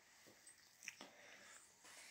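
Near silence: room tone with two faint clicks about a second in.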